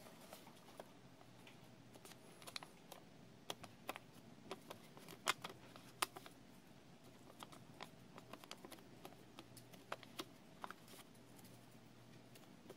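A sheet of origami paper being folded and creased by hand: faint, scattered crackles and clicks of the paper, the two sharpest a little before the middle.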